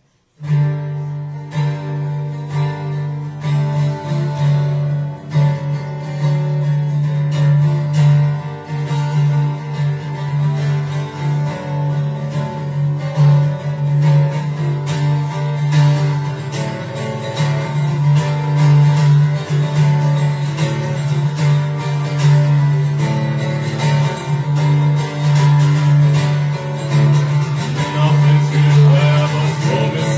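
Solo acoustic guitar strummed, starting about half a second in, with a steady low bass note under the strokes: the instrumental opening of a song, before any singing.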